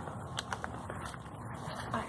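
Quiet rustling of steps through grass and dead leaves, with a few faint light crackles over a low background noise.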